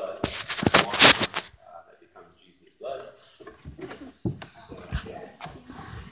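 Faint hushed voices, with a loud rustle of the phone being handled against its microphone in the first second or so and a few soft knocks near the end.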